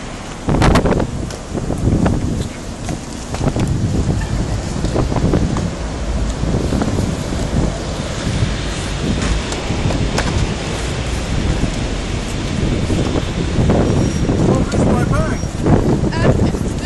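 Wind buffeting and rumbling on a handheld phone's microphone, with knocks from the camera being handled and indistinct voices around it.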